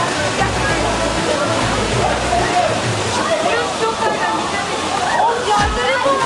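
Steady rush of a waterfall pouring close by, with a crowd of young people's voices talking and calling over it.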